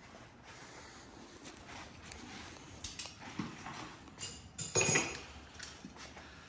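Faint, scattered clinks and knocks of metal tools being handled around a bare engine block, with one louder clank a little before five seconds in.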